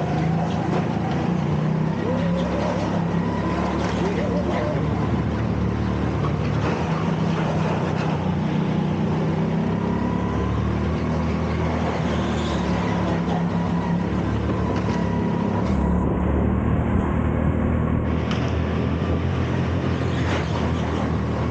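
Go-kart engine running hard under the driver, heard onboard, its pitch rising and falling gently with the throttle through the corners, over a steady haze of tyre and wind noise.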